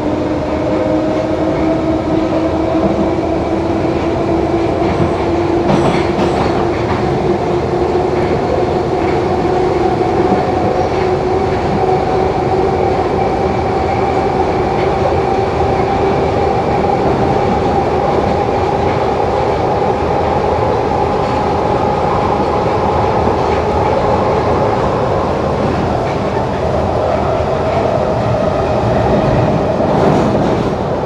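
1972 Tube Stock Bakerloo line train heard from inside the carriage, running through the tunnel with a loud steady rumble. Over it, the traction motors' whine rises slowly as the train gathers speed, then holds near the end. A brief clack sounds about six seconds in.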